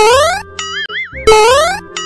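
Cartoon comedy sound effects laid over light background music: two rising springy "boing" sweeps about 1.3 s apart, each followed by a wobbling, warbling tone.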